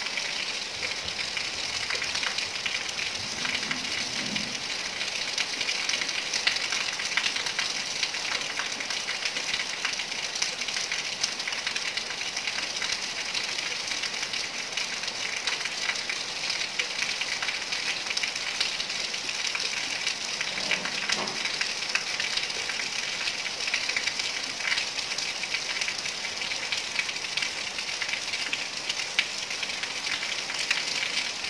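Steady rain falling on a wet flat concrete rooftop: an even hiss of fine drop patter.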